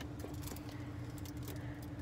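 Low, steady car-cabin noise while driving: road and engine rumble with a thin steady hum and a few faint clicks.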